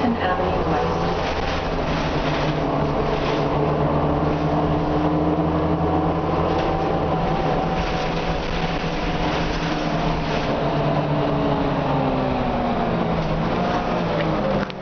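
Orion V transit bus's Cummins M11 diesel engine and Allison B400R automatic transmission heard from inside the cabin: a steady drone with a whine on top. The pitch creeps up slightly through the middle and eases down near the end.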